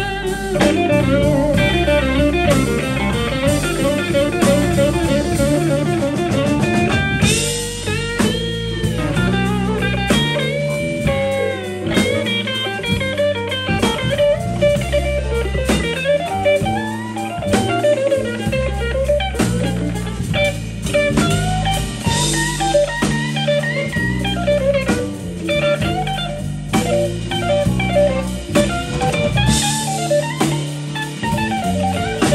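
Live blues band playing an instrumental passage: electric guitar takes the lead with bent notes over electric bass and a drum kit.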